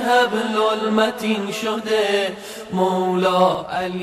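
A man's voice chanting a slow melody with long held, gliding notes, laid under the programme as background vocal music.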